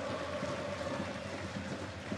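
Steady stadium crowd noise from the stands during a football match: an even, continuous hum with no distinct cheers or chants standing out.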